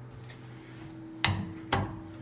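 Otis hydraulic elevator's submersible pump motor running as the car travels, heard from inside the cab as a steady low hum pitched near B-flat. Two sharp knocks land about half a second apart in the second half.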